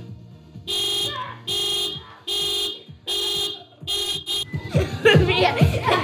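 A car horn honking in even pulses, about one every 0.8 seconds, five times: the car alarm's panic mode set off from the key fob. Children's voices follow near the end.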